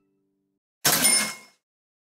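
Cash-register 'ka-ching' sound effect: a sudden short rattle with a bright ring, about a second in, dying away within about half a second.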